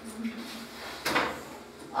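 A single sharp knock about a second in, a piece of chalk striking the blackboard, with a faint low hum of a man's voice near the start.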